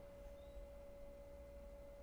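Near silence: faint room tone with a thin, steady hum holding one pitch throughout.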